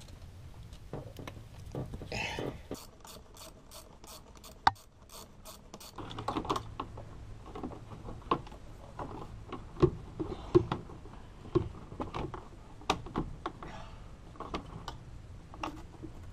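Hands fitting a rubber intake coupler and cold-air-intake tube onto the engine: irregular rubbing, knocks and clicks of the parts being worked into place, with a quick, even run of about a dozen clicks about three seconds in.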